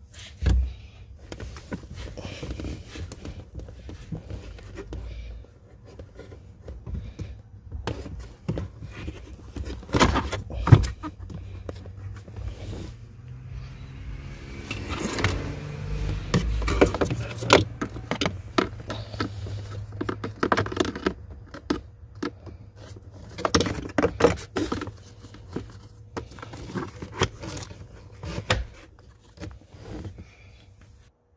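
Irregular clicks, knocks and scrapes of plastic being handled: a cabin air filter slid into its housing behind the glove box, and the housing cover clipped back on.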